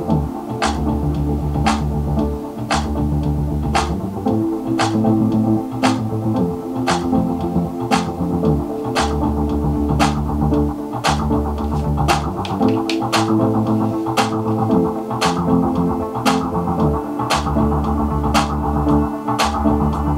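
Music with a steady beat of sharp percussion hits and deep bass notes, played through a pair of restored 1979 Unitra Tonsil ZG486 (Altus 60) loudspeakers.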